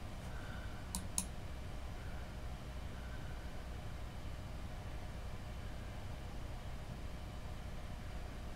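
Two quick, sharp clicks about a second in, a computer mouse being clicked, over a steady low room hum.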